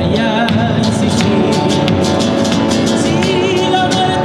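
Live Argentine folk music for a zamba, played on guitar and bombo legüero, running steadily with a wavering melody line over the strummed and drummed beat.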